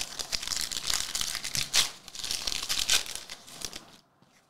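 Foil wrapper of a Panini Revolution basketball card pack being torn open and crinkled in the hands, with two sharper, louder crinkles about two and three seconds in.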